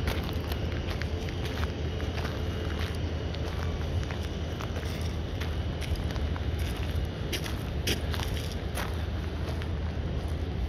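Wind rumbling on the microphone over a steady outdoor hiss, with a few faint clicks scattered through.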